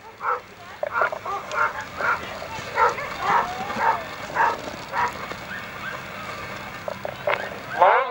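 Sled dogs barking in a rapid series of short barks, about two a second, which die away about five seconds in.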